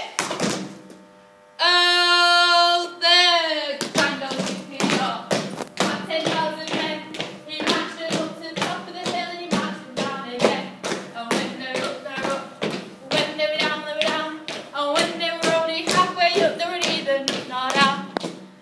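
A long held sung note about two seconds in, falling away at its end, then a steady beat of sharp taps, about two or three a second, with voices singing or chanting between them.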